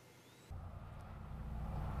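A faint, low outdoor rumble. It starts suddenly about half a second in, after a moment of near silence, and grows gradually louder.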